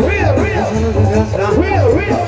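Live Mexican banda music: brass and reed melody lines over a steady, pulsing tuba bass and beat.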